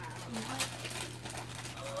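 Wrapping paper faintly rustling and tearing in short, irregular scrapes as a gift is unwrapped by hand, over a steady low hum.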